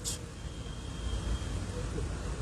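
Low rumble of road traffic with general outdoor street noise.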